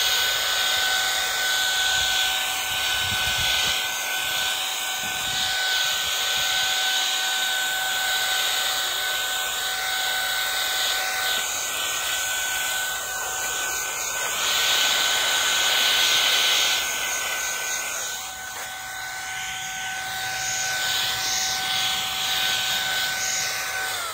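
Cordless handheld electric air duster (a mini blower rated to 100,000 RPM) running continuously: a high, steady motor whine over the rush of air from its nozzle.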